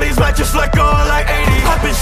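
Hip hop track: a rapped vocal over a heavy, sustained bass, with repeated kick hits that sweep down in pitch.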